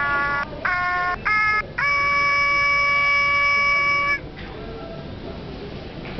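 Christmas Sing-a-ma-jig plush toy singing through its small speaker: four short held notes, then one long sustained note that stops a little after four seconds in.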